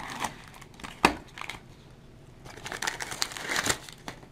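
Brown packing paper crinkling and tearing as it is pulled off a stack of silver rounds in plastic holders. There is a sharp click about a second in, and a denser run of crinkling near the end.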